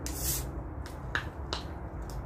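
A spoon against a small plastic cup while eating: a short scrape, then three light, sharp clicks in the second half-second to second and a half.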